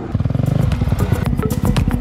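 A dirt bike engine running, with music with a steady beat coming in and taking over about halfway through.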